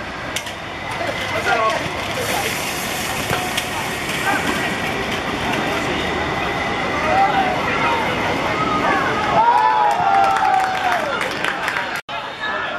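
Football players shouting and calling to each other across the pitch, several voices overlapping over a steady outdoor hiss. A longer, louder shout rises and falls about ten seconds in.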